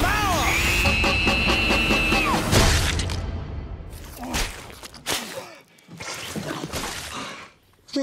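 Trailer sound design: music with high arching tones and a held high note. About two and a half seconds in comes a loud crash as a speedboat slams into a whale, followed by scattered thuds over a fading, thinning mix.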